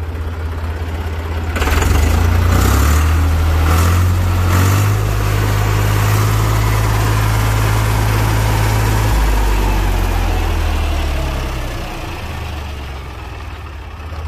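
Deutz-Allis 6250 tractor's air-cooled four-cylinder Deutz diesel revved up from idle about a second and a half in, held at higher speed, then slowing back toward idle near the end.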